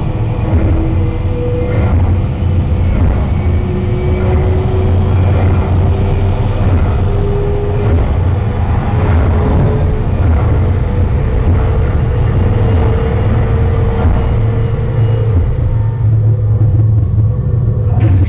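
Space 220 'Mark V Stellovator' simulated space elevator's ascent sound effect: a loud, steady low rumble with faint, slowly shifting held tones above it.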